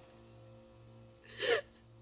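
A woman's single sharp, frightened gasp about one and a half seconds in, over quiet sustained background music.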